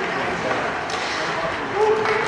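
Spectators' voices echoing in an indoor ice rink, with a few faint sharp clacks of hockey sticks and puck from the play on the ice.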